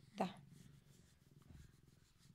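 Domestic cat purring faintly while it is held and stroked.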